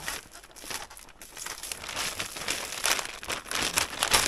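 Thin clear plastic film crinkling and rustling in irregular bursts as gloved hands press and smooth it flat over a window, busier in the second half.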